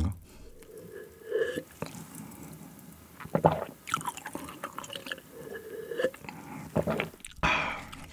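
Close-miked mouth sounds of drinking a dark soft drink through a straw from a glass jar: scattered sips and swallows with small wet clicks.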